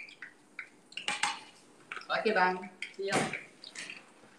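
Scattered clinks and knocks of dishes and kitchen items being handled, with a short spoken word near the end.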